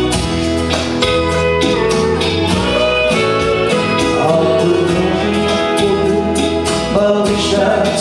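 A country karaoke backing track with guitar and a steady beat plays over a PA, and a man sings along into a microphone.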